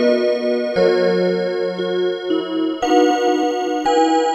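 Seiko Melodies in Motion musical clock playing its melody, a run of held, layered notes.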